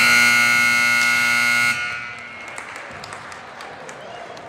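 Gym scoreboard buzzer sounding one loud, steady blast to end the first quarter of a basketball game. It cuts off abruptly under two seconds in, with a short ring of echo in the hall.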